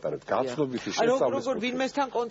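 Speech: continuous talking in Georgian, with no other sound standing out.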